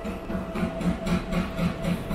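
A machine or engine running steadily, with a low pulse about four times a second under a constant hum.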